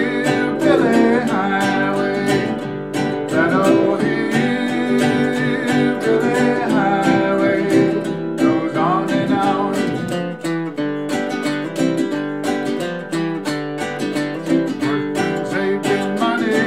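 Ukulele strummed in a steady rhythm, with a man's singing voice coming in and out over it.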